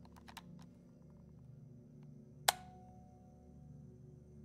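Faint dark ambient background music, a steady low drone, with a quick run of small clicks at the start and one sharp click about halfway through, followed by a brief ringing tone.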